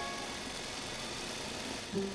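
Cartoon soundtrack: a steady, even hiss, with the last notes of a glockenspiel-like chime dying away at the start.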